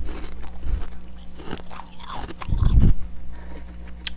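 Freezer frost being bitten and chewed close to the microphone: several crisp crunches, with the loudest, deepest chew a little past halfway. A steady low hum runs underneath.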